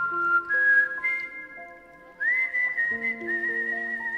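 Film background music: a high, whistle-like melody of long held notes, one sliding up about halfway and the last one wavering, over sustained lower chords.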